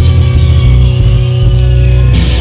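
Rock band playing loudly live: electric guitar, bass guitar and drum kit.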